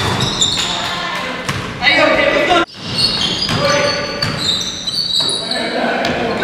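A basketball dribbled and bouncing on a hardwood gym floor, with sharp repeated impacts and many short high squeaks from sneakers, all echoing in a large gym. The sound drops out briefly a little under three seconds in.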